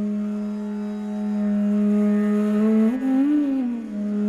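Bansuri (Indian bamboo flute) holding one long low note in raga playing, then sliding up and back down in a smooth glide near the end.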